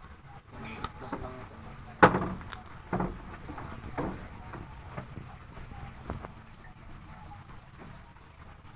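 A few sharp knocks and clicks, the loudest about two seconds in and smaller ones about a second apart after it, over faint steady background noise.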